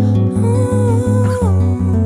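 Solo song on a nylon-string acoustic guitar: a steady fingerpicked pattern of about four notes a second over a low bass. A sung melody comes in about half a second in, holds, then steps down to a lower note around the middle.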